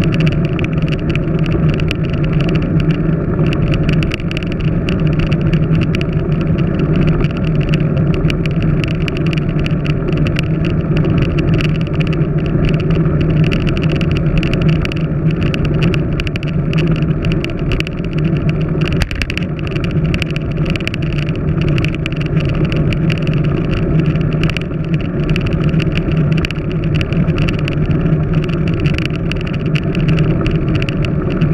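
Steady wind and road noise picked up by a handlebar-mounted GoPro Hero 3+ camera while a bicycle rides at speed along a road. It is a loud, unbroken rumble that stays the same all the way through.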